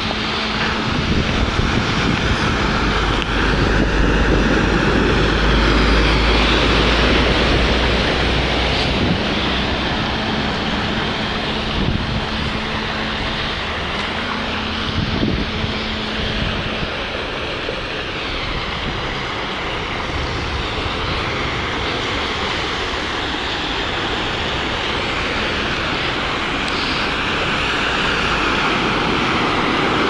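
Cars driving slowly through deep floodwater on a street, their tyres pushing water aside in a steady wash of splashing and spray over the engines running. It swells slightly near the end as a car ploughs through close by, throwing up a large bow wave.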